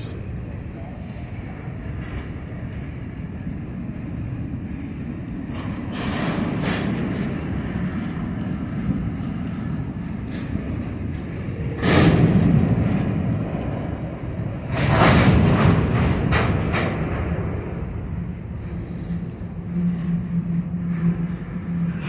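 CSX freight cars rolling past slowly during switching, a steady rumble of wheels on rail. Louder clatter and sharp clanks come about 12 seconds in and again around 15 to 17 seconds, and a steady low hum joins near the end.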